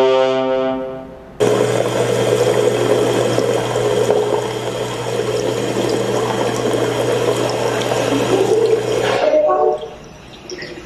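Tap water running from a bathroom sink faucet into the basin: a steady rush that starts abruptly about a second and a half in and cuts off suddenly near the end. Before it, a held brass chord fades out.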